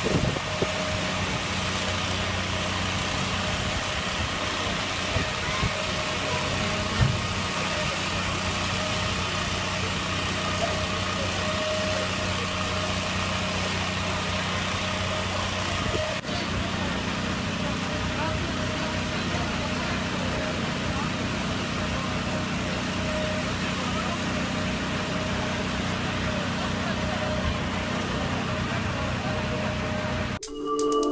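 Fire engine's diesel engine running steadily, a constant low hum with no change in pitch.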